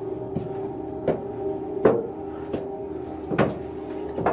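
Footsteps climbing a stone spiral staircase, a sharp step about every 0.7 seconds, over a steady low hum.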